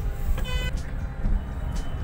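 Steady low rumble of a car moving slowly, heard from inside the cabin. A short vehicle horn toot comes about half a second in.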